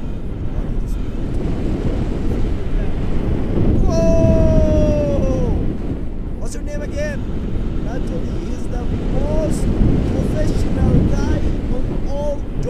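Airflow of paragliding flight rushing and buffeting over the camera microphone. A long cry falling in pitch comes about four seconds in, and short voice sounds follow later.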